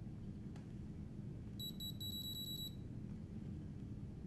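Electronic key beeps from a screwdriver's handheld remote controller: one short high beep, then a quick run of about seven more as the speed setting is stepped down button press by button press. A faint click comes shortly before, over a low steady background hum.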